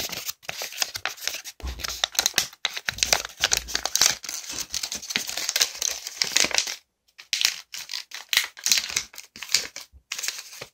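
Origami paper crinkling and rustling as it is creased and folded into a box close to the microphone, in quick crackly bursts with a short break about seven seconds in and a few low bumps.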